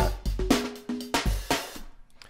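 A programmed drum-kit beat from the Addictive Drums 2 virtual drum instrument, with kick, snare and hi-hat hits, playing back through the Logic Pro mixer. It dies away near the end.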